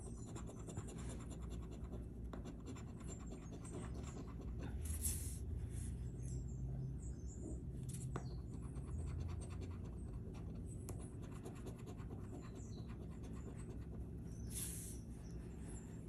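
A coin scratching the coating off a lottery scratch-off ticket: a faint, steady run of fine rasping strokes, with a couple of louder sweeps about five seconds in and near the end.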